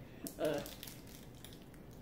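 Faint crinkling of a thin plastic wrapper being peeled off an individually wrapped cheese slice, with a short hesitant "uh" about half a second in.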